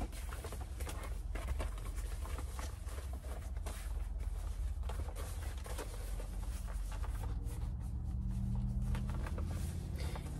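A black fabric storage bag being folded up by hand: an irregular run of soft rustles and crackles, over a steady low hum.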